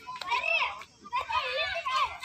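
Children's high-pitched voices calling and chattering at play, in two bursts with a short pause about a second in.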